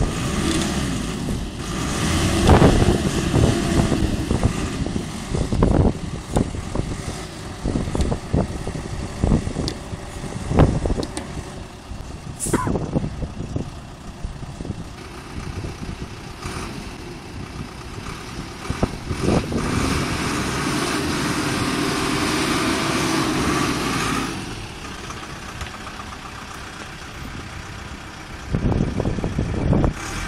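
Minibus engine revving unevenly as the bus is driven off soft, wet grass where it was stuck, with a sustained higher rev in the second half that drops away suddenly. Wind buffets the microphone.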